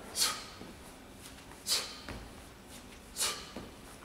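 Sharp, hissing breaths forced out with each kettlebell swing, three of them about a second and a half apart, each fading quickly, with a couple of soft thuds between them.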